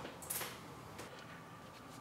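Quiet room tone with a faint short rustle near the start and a faint click about a second in.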